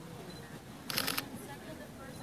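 A camera shutter firing a quick burst of several frames about a second in, over background chatter.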